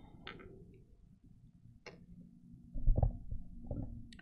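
Handling noise from a gooseneck lectern microphone being bent into position by hand: low thumps and rumbles, loudest about three seconds in and again just before the end, with a few light clicks.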